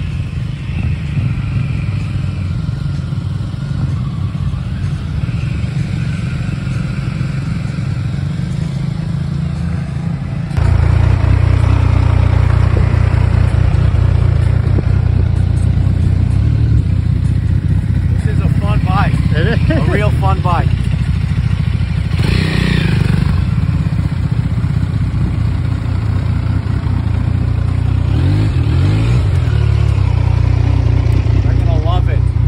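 Single-cylinder Triumph 400 motorcycle running at low speed in a parking lot, a steady low rumble that jumps louder about ten seconds in. Faint voices can be heard in the background.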